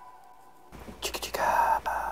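A breathy whispered voice begins just under a second in, after a moment of quiet, and ends with a short, fading tail.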